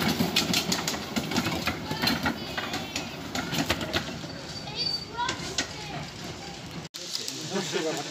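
Ride-on miniature railway carriages rolling past with repeated sharp clicks from the wheels on the track, over people talking. Near the end the sound cuts off suddenly and gives way to a voice.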